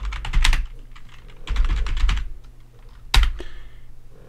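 Computer keyboard typing a short console command. A quick run of keystrokes comes first, then a second run about a second and a half in, and a single hard keystroke near the end: the Enter key sending the command.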